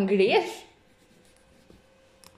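A voice briefly at the start, then a gold paint marker faintly writing across a glossy photo print, with a faint steady hum underneath.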